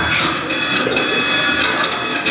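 Small motor whirring with a steady high whine as it lowers a suspended water balloon. It starts suddenly and runs on evenly.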